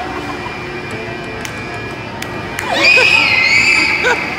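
A child riding a spinning disc amusement ride lets out one long, high scream that starts about two and a half seconds in and lasts over a second, wavering slightly in pitch. Background music plays underneath.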